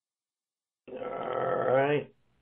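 Near silence, then about a second in a man's voice makes one drawn-out, wordless sound, lasting just over a second.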